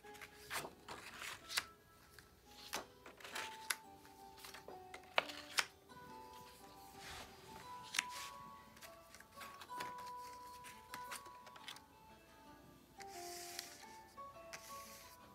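Quiet background music playing a simple melody of held notes, over frequent small clicks and rustles of laminated paper cards being handled.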